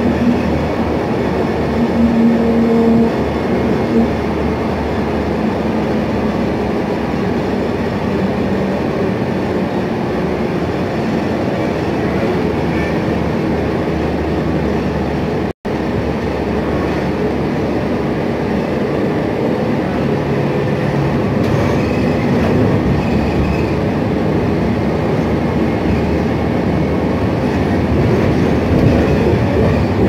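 Cabin ride noise of a New Flyer XN60 articulated bus under way: a steady drone of road rumble and its Cummins Westport ISL G natural-gas engine. The sound cuts out for an instant about halfway.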